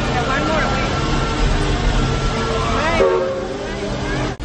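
Crowd chatter mixed with background music. About three seconds in, the sound changes abruptly and several steady tones hold together, like a horn or whistle.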